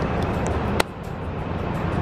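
Steady low rumble of parking-garage background noise, with one sharp click a little under a second in, after which it is quieter.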